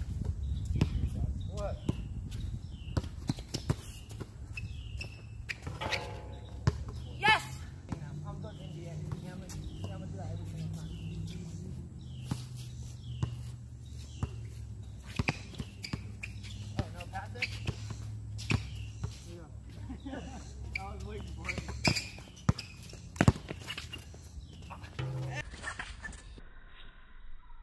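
Basketball bouncing on an outdoor court during a pick-up game, with sharp irregular impacts from dribbles and shots, players' footsteps and occasional indistinct voices. A steady low rumble runs underneath.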